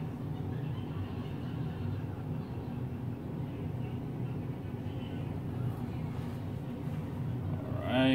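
Steady low mechanical hum with no distinct events, the drone of machinery or ventilation in a room.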